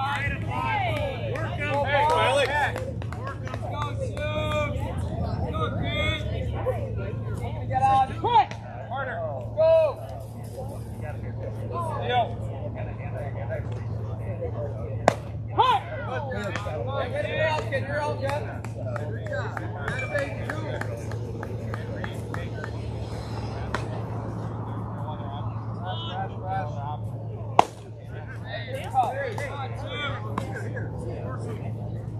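Background chatter of voices at a youth baseball game over a steady low hum, broken by a few sharp smacks of a pitched baseball: two about fifteen seconds in and one near the end.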